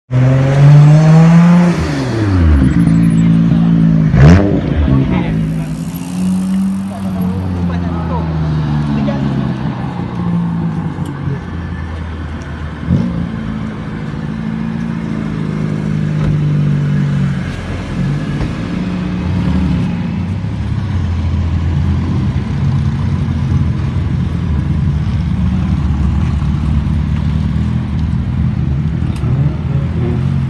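Car engines revving and driving past close by, their pitch repeatedly rising and falling. There are two sharp bangs, the louder one a few seconds in and the other about halfway through.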